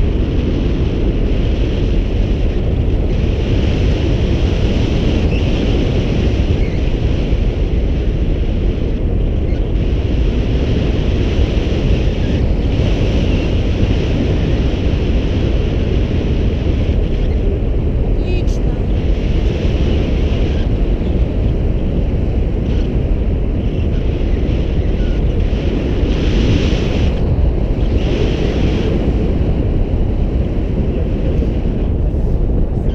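Airflow of a paraglider in flight buffeting an action camera's microphone: a loud, steady low rumble of wind, with a higher hiss that swells and fades every few seconds.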